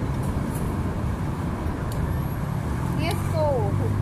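Steady low rumble of background road traffic with a faint engine hum, and a brief voice with a rising and falling pitch about three seconds in.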